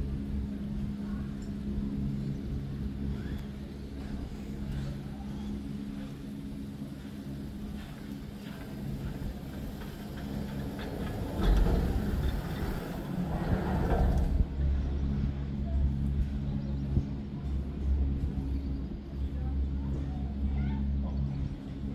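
Gondola lift station machinery humming steadily at a low, even pitch while a cabin passes through the station. A louder rush of mechanical noise rises over the hum for about three seconds midway.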